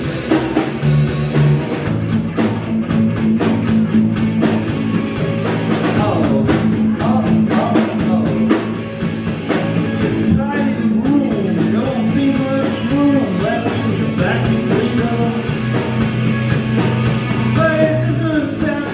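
Live rock band playing with electric guitar, bass guitar and a drum kit, the drums keeping a steady beat under sustained bass notes.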